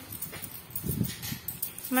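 Peso coins being handled and shifted in a heap on a cloth, soft scattered clinks, with a brief low sound about a second in.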